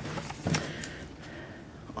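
Faint handling sounds of a paper card being picked up from a cardboard box: a soft rustle and a couple of light taps about half a second in, then quiet room tone.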